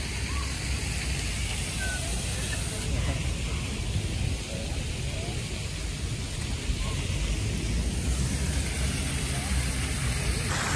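Steady outdoor city background: a fluctuating low rumble, with faint distant voices and no distinct events.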